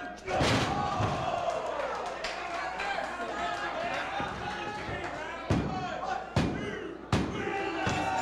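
A wrestler's body landing on the ring canvas from a dive off the top rope: one loud thud with the ring ringing after it, about half a second in. Crowd shouting follows, and near the end come several sharp slaps on the mat, a little under a second apart, as the referee counts the pin.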